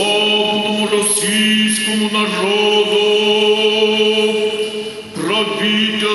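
Eastern Orthodox liturgical chant at a thanksgiving prayer service: voices singing slow, held phrases over a steadily sustained low note. There are short breaks between phrases about two seconds in and again near five seconds.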